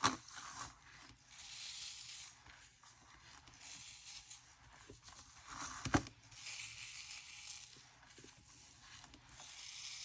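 Fingers sweeping loose glitter across a metal tray: a faint scratchy hiss in several strokes, each lasting about a second. Two soft knocks, one right at the start and one about six seconds in.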